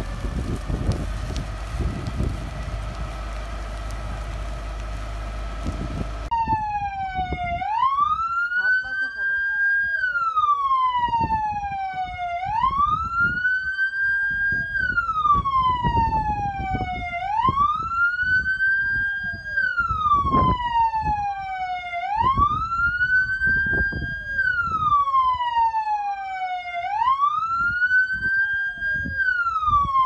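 A steady rushing noise for about six seconds, then an emergency vehicle siren wailing. Each cycle rises, holds briefly at the top and falls again, repeating about every two and a half seconds, with a fainter second siren cycling out of step beneath it.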